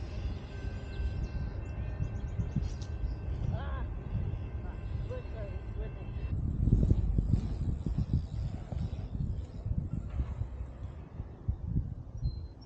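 Low rumbling noise of a bicycle being ridden over a dirt pump track, as wind and rough riding buffet the action camera's microphone. The rumble rises and falls over the bumps, and gets more uneven in the second half.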